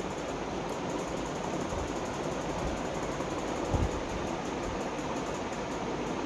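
Steady hiss of background room noise with no speech, and one soft low thump a little before four seconds in.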